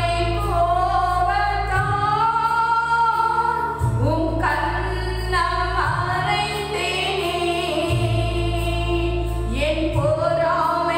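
A woman sings a devotional hymn into a microphone, holding long notes that slide between pitches. Beneath her is a low accompaniment that shifts about every two seconds.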